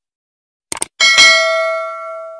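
Two quick clicks, then a bell ding that rings on and fades over about a second and a half: the click-and-notification-bell sound effect of a subscribe button animation.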